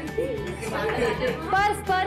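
Overlapping chatter from a group of people over background music, with one voice rising loud and high near the end.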